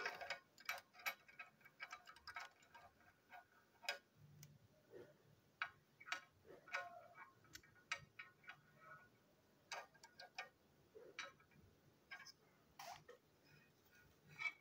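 Faint, irregular plastic clicks and taps from the wheelsets and chassis of a knockoff TrackMaster toy train tender being handled and prised apart by hand.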